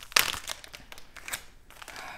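Clear plastic wrapping around a wax melt bar crinkling as it is handled: a loud rustle just after the start, then scattered small crackles.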